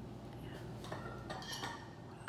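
Quiet room tone with a low hum and a few faint, light clinks and taps, and one softly spoken word about a second in.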